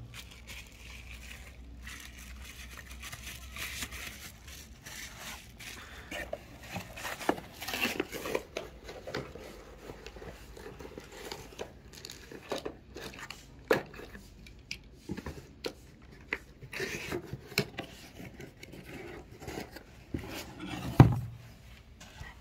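Handling noise from unboxing a camcorder: packaging rustling and crinkling, with scattered clicks and knocks as the camera and cardboard box are handled. One loud knock comes about a second before the end.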